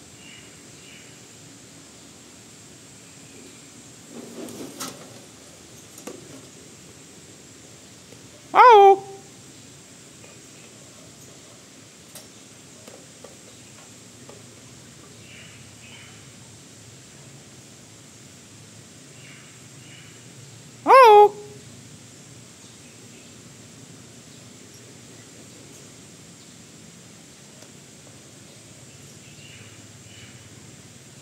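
A man imitating a hornbill's call to coax the bird closer: a loud, short hoot that rises and then drops away, given twice, about twelve seconds apart.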